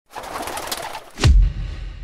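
Intro sound effect: a noisy rush for about a second, then a sudden deep boom that dies away.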